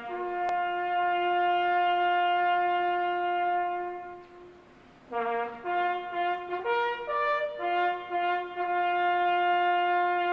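Solo brass instrument playing a slow, bugle-style melody: a long held note, a pause of about a second, then a few shorter notes moving up and down before settling into another long held note.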